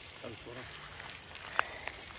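Faint, distant voice for a moment, over steady outdoor background noise, with two sharp clicks near the end.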